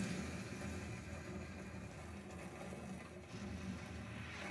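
Explosion sound effect from the anime being watched: a steady low rumble and hiss carrying on from a sudden blast, loudest at first and easing slightly.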